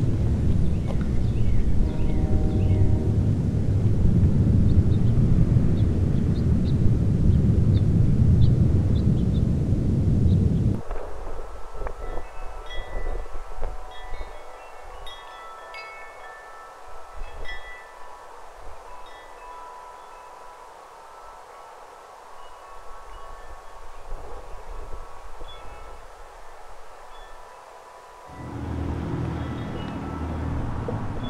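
Chimes ringing in scattered, sustained tones at several pitches. For the first ten seconds or so they sit under heavy wind rumble. The rumble then cuts off suddenly, leaving the chimes over a quiet background, and it returns near the end.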